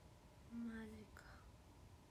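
A woman's short, quiet hummed "mm" about half a second in, dipping slightly in pitch, followed by a soft click or breath, over faint room tone.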